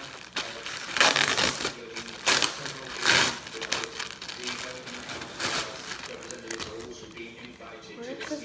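Thin clear plastic bag crinkling and rustling in bursts as a hat is pulled out of it. The loudest rustles come about a second in and again around three seconds, with smaller ones after.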